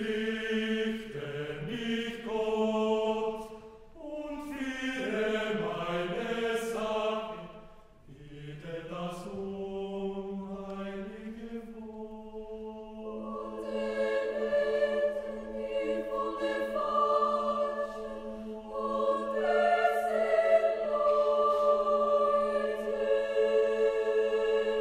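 Large mixed choir singing. It enters suddenly after near silence in short phrases, and from about eight seconds in a low note is held steady beneath the upper voices while they move above it.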